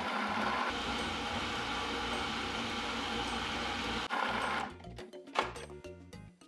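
Food processor motor running steadily, puréeing sweet potato, for about four and a half seconds, then stopping; a brief knock follows near the end.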